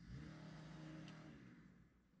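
Faint small petrol engine of yard equipment revving up, holding for over a second, then dropping back near the end, as it is throttled up and down.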